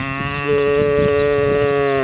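A man imitating a cow's moo through his cupped hand to call cattle over: one long, loud, steady moo that rises at the start and falls away at the end.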